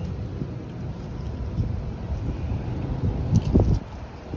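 Low rumbling wind noise on a handheld phone's microphone, with a couple of handling knocks a little over three seconds in.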